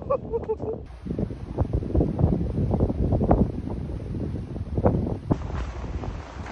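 Hiking boots tramping through snow, an uneven run of footsteps several times a second, with wind rumbling on the microphone.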